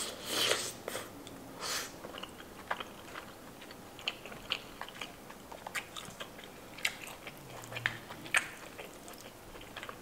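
Close-miked chewing of a mouthful of two green-lipped mussels, with wet mouth clicks and smacks scattered throughout and the strongest bursts in the first couple of seconds.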